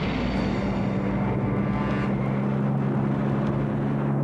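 Propeller aircraft engine droning at a steady pitch over a dense hiss.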